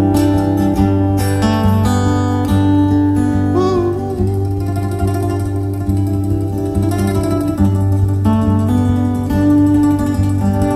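Acoustic guitar playing an instrumental passage of a live song: regularly picked strokes over a sustained low note, with a brief wavering note about four seconds in.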